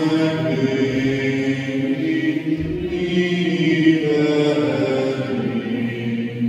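A group of voices singing a slow, chant-like sacred song, with long held notes.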